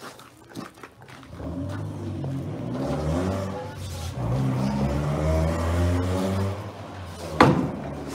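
A motor engine running, its low hum rising and falling in pitch over several seconds, then a single sharp knock near the end.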